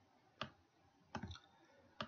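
Computer mouse clicks: a single sharp click, then a short cluster of clicks just over a second in.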